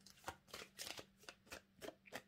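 A tarot deck being shuffled by hand: a quick, faint run of about ten soft card flicks and slaps.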